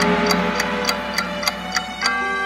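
Clock ticking, about three ticks a second, over a held musical note.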